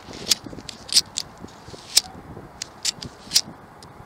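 Disposable lighter's spark wheel being flicked over and over with a thumb to test it: about six sharp, scratchy clicks spread unevenly across four seconds.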